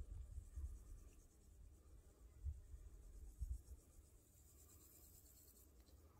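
Near silence: a faint low rumble of outdoor ambience with a few soft, brief low thumps.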